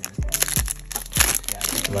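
Foil wrapper of a Yu-Gi-Oh! booster pack crinkling and crackling as it is torn open by hand, in quick bunches of sharp crackles, over background music.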